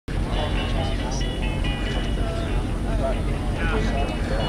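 Several people talking over a steady low rumble, with faint music in the background.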